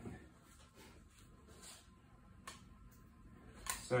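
Quiet workshop room tone with faint handling noises and two small sharp clicks, the louder one near the end.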